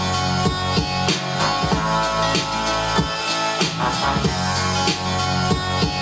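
Sample-based hip-hop beat playing: a looped sample from a song with kick drum, snare and hi-hat samples cut from other songs, hitting in a steady rhythm.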